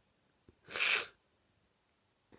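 A single short, sharp breath through the nose, about half a second long, from someone with a head cold, with a faint click just before it.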